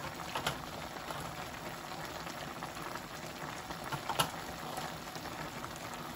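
A pot of chicken and flat-bean curry simmering on a gas stove: a steady bubbling hiss with small crackling pops. A single sharp click about four seconds in.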